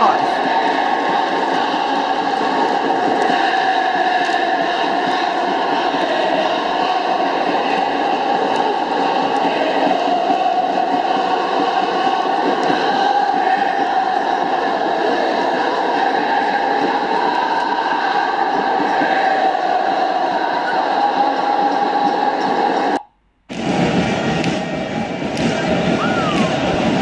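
A huge stadium crowd of football ultras chanting together as one dense, steady mass of voices. It cuts out for about half a second near the end, then carries on.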